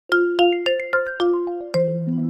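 Smartphone ringtone for an incoming call: a tune of short chiming notes, about four a second.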